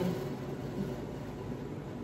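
A steady low background hum with no other distinct sound.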